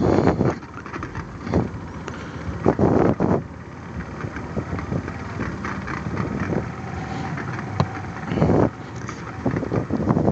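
Motorcycle engine running at low riding speed, heard from the rider's seat, with a few louder surges of noise about three and eight seconds in.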